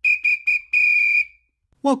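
A coach's whistle blown as three short blasts and then one longer blast, all on a single high steady tone.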